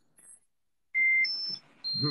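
A few short electronic beep tones, each held for about a third of a second at a different pitch. The first is lower and comes about a second in, the second is higher, and the third comes near the end, with a faint hiss under them.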